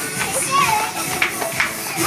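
A group of children calling out and chattering excitedly as they play, with music playing underneath.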